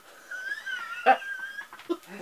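A man's high-pitched, wheezing squeal of held-in laughter, a thin wavering tone with a short louder burst about a second in.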